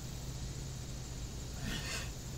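A man's short breathy laugh near the end, over a steady low background rumble.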